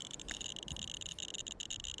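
RadiaCode RC-102 radiation detector clicking very fast, the clicks running together into a high, flickering buzz. It is held against a piece of uranium-bearing copper shale, and the fast rate is the sign of a dose rate well above background, around 1 µSv/h.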